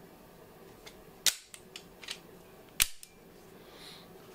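Two sharp metallic clacks about a second and a half apart, with a few faint clicks of handling around them: the slides of two unloaded striker-fired pistols, a CZ P-10 C and a Heckler & Koch VP9, snapping forward as they are released from slide lock.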